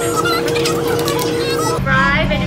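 Background music: a song with a singing voice over steady held notes, the held note dropping to a lower one near the end.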